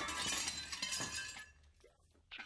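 Glass-shattering sound effect: one sudden crash that rings away over about a second and a half, breaking into the song's backing track.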